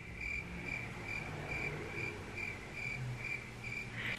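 Cricket chirping at an even pace, about two chirps a second: the stock 'crickets' sound effect used for an awkward silence after a question goes unanswered.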